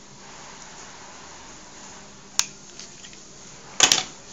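A sharp single click about two and a half seconds in, then a louder quick cluster of clicks and knocks near the end, over a faint steady hiss: handling noise as the long-nosed lighter is taken out of the toy steam engine's firebox once the fuel is lit.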